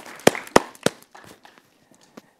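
Brief scattered applause from a small audience: a handful of separate claps that thin out and stop about halfway through.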